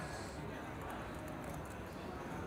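Poker chips clicking together as they are handled and pushed at the table, a rapid run of small clicks over a low murmur of room voices.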